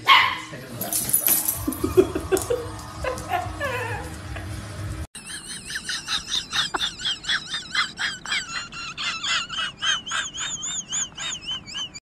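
Dogs vocalising. First a puppy yips at a larger dog. After a sudden cut about halfway through, a husky gives a long run of quick, wavering, high-pitched howl-like calls, about two a second.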